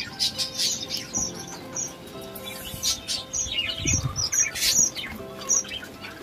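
Small birds chirping in short, high, repeated notes several times a second, over soft background music, with a dull thump about four seconds in.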